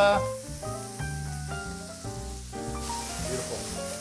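Background music of held chords over a bass line, with a faint hiss of onions and peppers frying in a pan underneath.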